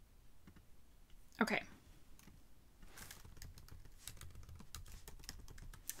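Typing on a computer keyboard: a quick run of faint keystrokes through the second half.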